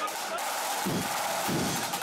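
Crowd noise in a hall, then a marching band's big bass drum starts beating about a second in, a few slow, heavy strokes leading the drums in.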